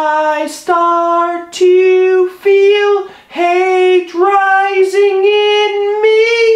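A man singing solo and unaccompanied in a high voice: a string of held notes, each about half a second to a second long, broken by short breaths, the pitch edging higher toward the end.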